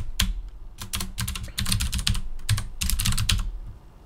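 Typing on a computer keyboard: quick, irregular runs of keystrokes that thin out just before the end.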